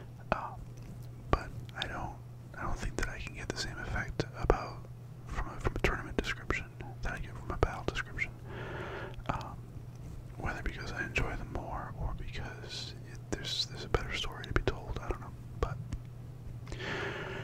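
A man whispering close to a fur-covered microphone, in short broken phrases with sharp clicks between them. A steady low hum runs underneath.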